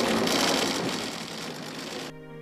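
Dense, rapid clatter of many camera shutters firing at once. It starts abruptly and thins slightly towards the end.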